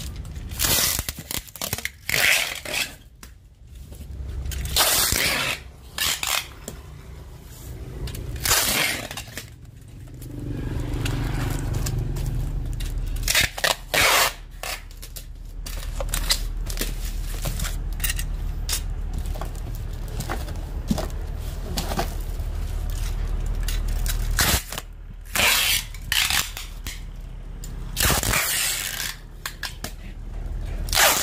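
Packing tape being pulled off the roll through a hand-held tape dispenser in repeated short, loud ripping pulls, with crackling as the tape is wrapped around and pressed onto a woven bamboo basket. A low steady hum runs underneath from about a third of the way in.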